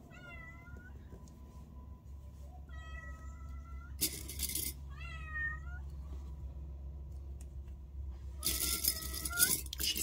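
A house cat meowing four times at the door, calling to be let into the room; the second call, about three seconds in, is the longest and fairly level. A short burst of hissy noise comes about four seconds in.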